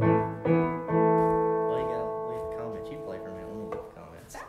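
Electronic keyboard with a piano voice: three chords struck within the first second, then held and slowly fading away.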